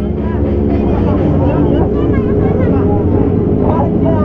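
Engines idling steadily, a low even hum that holds through the whole stretch, with faint voices over it.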